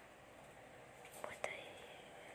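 Mostly quiet, with a faint whispered voice and a couple of light clicks in the second second.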